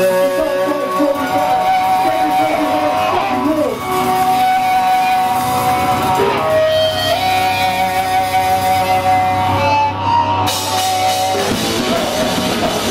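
Electric guitar played live through amplifiers, ringing out long sustained notes that slide and bend over a low bass drone as a hardcore song's slow intro. The full band, drums included, crashes in near the end.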